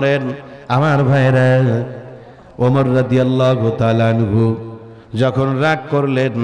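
A man's voice chanting melodically in long held phrases, three in a row with short breaths between them.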